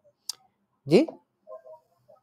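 A single sharp click, then about a second in a short, loud vocal sound rising quickly in pitch, followed by faint low murmuring.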